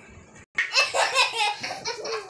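Children laughing hard, starting about half a second in, with rapid repeated peals.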